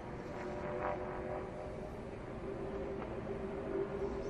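Stock car V8 engines of the race field droning steadily on track. One engine note holds and grows stronger about two and a half seconds in.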